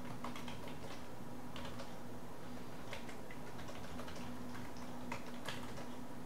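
Computer keyboard typing: irregular keystrokes, a few in quick runs, over a steady low electrical hum.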